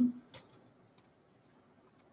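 A few faint computer mouse clicks. The first comes about a third of a second in, then two close together about a second in, with near silence between.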